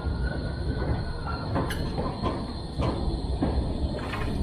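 Low-floor electric tram passing close by, its wheels rumbling steadily on the street rails. A thin high tone fades out about a second and a half in, then the wheels give a few sharp clicks over the track.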